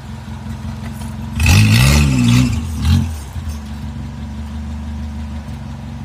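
Suzuki off-road 4x4's engine running steadily, with one brief rev that rises and falls about one and a half seconds in.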